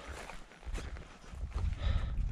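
Footsteps crunching along a rocky trail covered in dry leaves, under wind buffeting the microphone; the wind's low rumble swells about halfway in.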